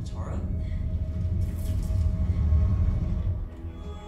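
Television episode soundtrack: a low, steady rumble with a short spoken line at the start, then a cut about three and a half seconds in to low, sustained foreboding music.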